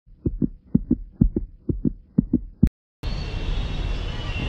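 A heartbeat sound effect: five quick double thumps, about two a second, ending in one sharp hit. After a moment of dead silence, steady background noise comes in about three seconds in.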